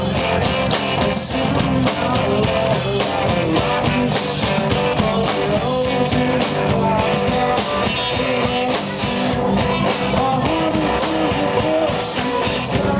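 Live rock music from an electric guitar and a drum kit, played loud and steady.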